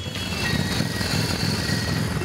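Cruiser motorcycles riding past, their engines running steadily.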